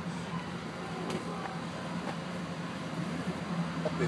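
Steady hum and rush of air from an inflatable bounce house's electric blower fan keeping it inflated.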